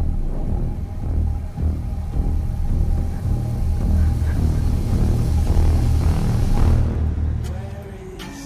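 Dramatic film score and sound design: a deep, pulsing low rumble under a faint sustained high tone, swelling louder and then fading away near the end.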